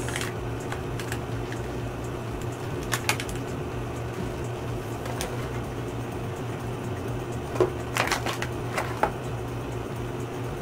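Scattered clicks and crackles of a clear plastic toy package being squeezed and handled, sharpest about three seconds in and in a cluster near the end, over a steady low hum.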